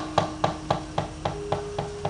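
Rhythmic knocking, about six even strokes a second, under a held musical note that steps up in pitch partway through: the percussion and sustained tone of a gamelan accompaniment between sung lines.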